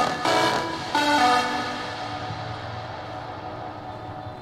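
The pop song an idol group dances to, played through a stage speaker, reaching its end: a few short final chords in the first second and a half, then the sound dies away.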